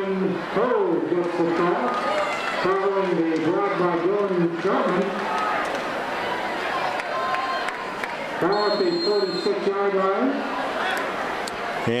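Stadium crowd noise with raised voices calling out in several stretches, a few seconds each.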